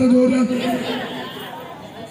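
A man's chanted recitation, held on one steady pitch, ends about half a second in, followed by the quieter murmur of crowd chatter in a large hall.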